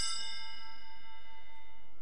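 Altar bells ringing on after being struck, their bright tones fading away, with one lower tone lingering until near the end.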